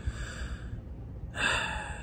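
A man's breathing between sentences: a soft breath at the start and a louder breath from about a second and a half in.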